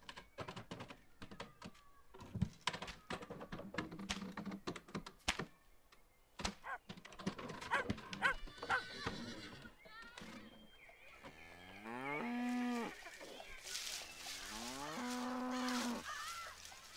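Cow mooing twice in the second half, each call rising in pitch and then held, after a run of scattered knocks and clicks.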